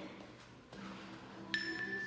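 Quiet for the first second and a half, then an interval timer starts a steady, high electronic countdown beep about one and a half seconds in, marking the last seconds of the work interval.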